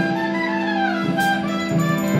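A jazz saxophone section with a clarinet playing sustained chords together, the upper line sliding downward and the harmony shifting about a second in.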